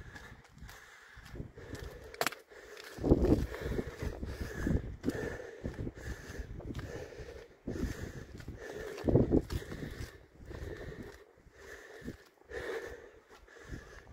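Footsteps on a concrete path and steps, at walking pace, with gusts of wind rumbling on the microphone, strongest about three and nine seconds in.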